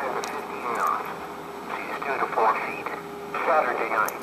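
A NOAA weather radio's small speaker playing a broadcast voice half-buried in static, the hiss swelling and fading as the reception comes and goes. Its antenna has broken off, so it barely holds a signal.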